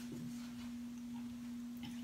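A steady low hum at one unchanging pitch, with faint scattered soft clicks and mouth sounds of people chewing food.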